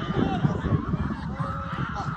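Spectators and players on the sideline shouting and yelling over one another during a play. One drawn-out yell starts about three-quarters of the way through.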